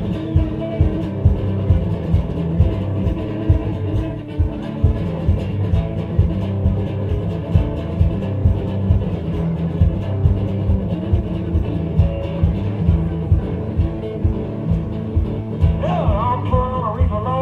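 Live one-man-band blues-rock played loud: an amplified guitar riff over a steady thumping foot-stomp beat, with no singing.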